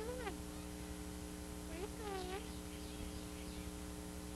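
A cat meowing twice, once at the start and again about two seconds in, each call rising and falling in pitch, over a steady low hum.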